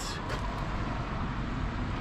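Steady outdoor background rumble, even and without distinct events, of the kind made by distant road traffic and wind on the microphone.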